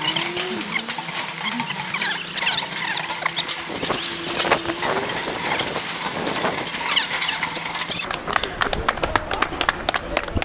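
Footsteps on the metal-plated deck and steps of a steel scaffolding footbridge: a quick run of sharp clanking strikes, with a few short squeaks. About eight seconds in, the sound turns duller, to footfalls on pavement.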